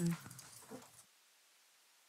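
A man's short spoken "nej" at the very start, fading to a faint trace, then the recording falls to dead silence about a second in.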